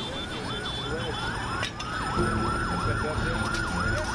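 Emergency vehicle sirens wailing together: one in a fast yelp sweeping up and down about four times a second, another holding a steady high note from about a second in. A single sharp click sounds partway through, over a low rumble.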